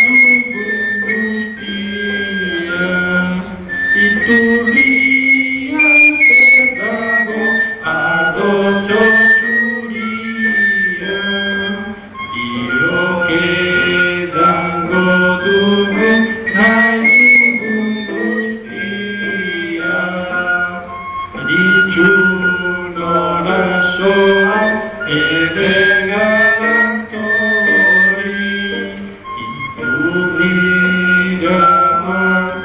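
Live devotional music: male voices singing together, accompanied by a harmonium's held reed tones and a strummed acoustic guitar.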